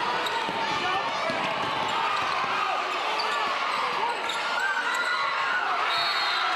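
A basketball being dribbled on a hardwood gym floor, with people's voices around it.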